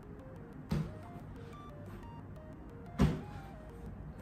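Two slaps of a rugby ball landing in both hands as it is caught after a two-handed toss straight up, one just under a second in and a louder one about three seconds in, over faint background music.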